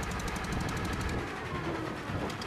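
A boat engine running steadily with a fast, even chugging beat.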